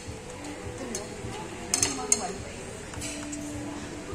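Tableware clinking as utensils knock against ceramic bowls during a meal: a few sharp clinks, the loudest a quick pair a little under two seconds in, over background music and murmur.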